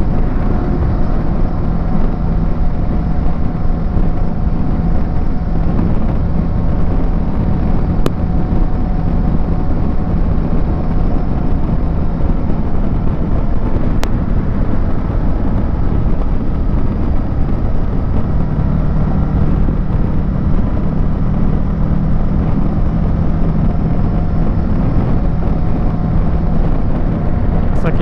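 Kawasaki Versys 650 parallel-twin engine running at a steady highway cruise, heard under heavy wind and road rush. The engine note shifts slightly about two-thirds of the way through.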